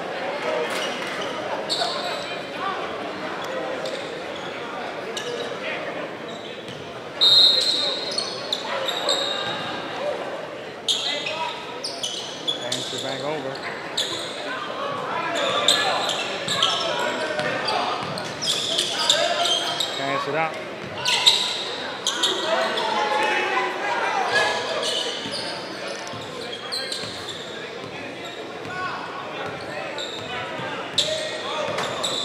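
Basketball game sounds in a large echoing gym: a ball bouncing on the hardwood court with scattered sharp knocks and squeaks over a background of players' and spectators' voices. A short high-pitched sound about seven seconds in is the loudest moment.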